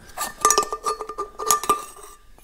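Pump top of an Eagle oil can being unscrewed from the can body: a quick run of small metal clicks and scrapes from the threads, with the metal ringing in a steady tone through them.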